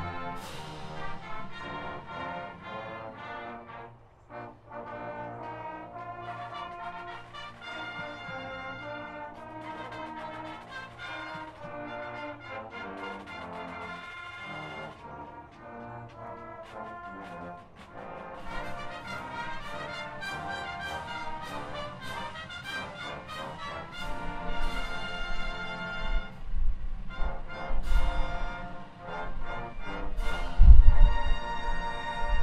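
Band playing the national anthem, brass instruments leading. Wind rumbles on the microphone over the last few seconds.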